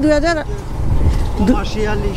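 Motorcycle running at low town speed, its engine and wind on the microphone making a steady low noise.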